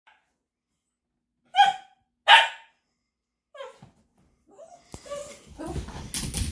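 Small mixed-breed dog barking in play: two loud barks under a second apart, a fainter one about a second later. Scuffling and thumps of the dogs moving on the couch follow near the end.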